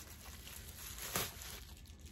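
Bubble wrap crinkling and rustling as it is pulled off a cardboard palette box, with one sharper crackle just past the middle.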